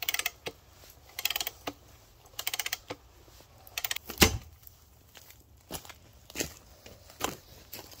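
Ratchet handle of a homemade screw-cone log splitter clicking in short rapid bursts, about one burst a second, as it is cranked back and forth to drive the threaded cone into a log. A little past four seconds comes a loud knock, then a few scattered single knocks.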